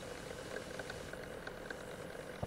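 Low steady background hiss and hum from a webcam microphone on a video call, with no one speaking.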